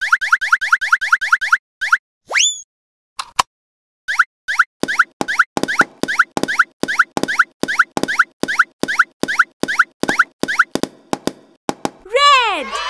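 Cartoon pop sound effects. First a fast run of short rising pops, then one rising glide, then a steady string of pops about three a second.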